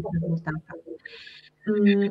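A woman speaking Polish, with a brief pause in the middle.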